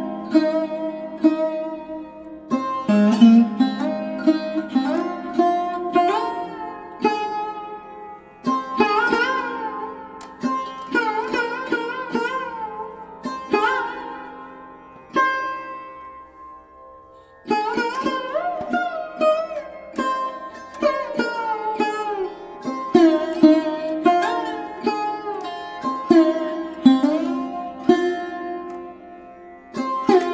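Instrumental music in raga Malkauns: a plucked string instrument plays phrases with pitch bends over a steady drone. The notes die away into a brief lull about halfway through, then the playing starts again.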